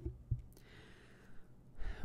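A person's breath out, heard as a soft hiss close to the microphone, then a short intake of breath just before speaking. Two faint low thumps come near the start.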